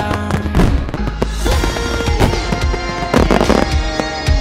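Fireworks bursting and crackling over background music, with a dense crackle about three seconds in.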